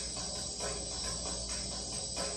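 Recorded Albanian folk music in a gap between sung lines: a def, a frame drum with jingles, keeps a steady beat of about four strokes a second over a hissing jingle shimmer.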